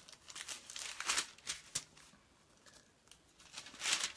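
Paper rustling and crinkling in a few short bursts, the loudest one near the end.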